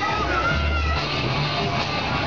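Loud fairground dance music from the ride's sound system, with a bass line stepping between notes, and high gliding shrieks of riders over it.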